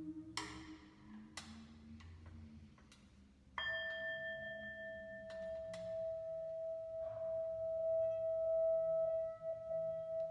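A singing bowl struck about three and a half seconds in, its single clear tone ringing on steadily and swelling louder near the end. Before it come two light strikes with a brief shimmering ring.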